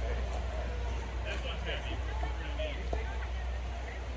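Faint background voices of people talking, with no clear words, over a steady low rumble. A few short high calls come a little over a second in.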